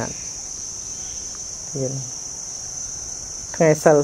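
A steady, high-pitched shrill of insects drones on without a break. Spoken words come in at the start, briefly just before the middle, and again near the end.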